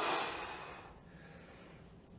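A man's single breath during exercise, sharp at the start and fading away over about a second.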